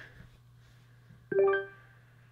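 Google Home Mini smart speaker playing its short setup chime just past halfway, a single bright tone with overtones that fades within about half a second. The chime confirms that the phone is connected to the right Google Home Mini.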